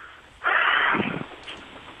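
A man's heavy breath out, heard through a telephone line, lasting about half a second and trailing off into fainter breathing.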